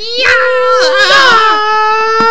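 A person's voice holding a long, high-pitched wailing cry, its pitch wavering and gliding a little, with a few faint clicks.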